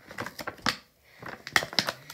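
Handling noise close to the microphone: a run of quick, irregular clicks and taps, some in fast clusters, from hands working small objects at the counter.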